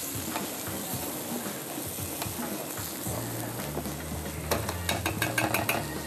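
Rice frying in a hot pan, sizzling as broth is poured onto it, over the steady working of a wooden pestle in a glazed ceramic mortar as oil is worked into alioli. Near the end come a run of quick clicks and taps.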